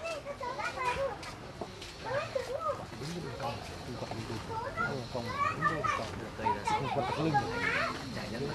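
Indistinct voices of several people talking in the background.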